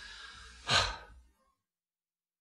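A man sighing in exasperation: one audible out-breath just under a second in.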